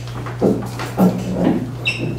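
Meeting-room background: brief indistinct voices about half a second and one second in, over a steady low hum, with a short high squeak near the end.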